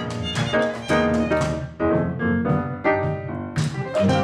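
Jazz band playing, with an amplified violin taking the lead over piano and upright bass.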